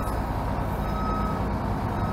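Detroit Diesel 6V92 two-stroke V6 diesel of a 1955 Crown Firecoach fire engine running steadily at low speed while the truck is backed up, with a faint high back-up beep at the start and again about a second in.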